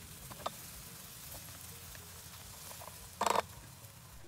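Faint sizzling of corn in melted butter in a frying pan on very low heat, with a light tap early on and a short clatter of knocks about three seconds in.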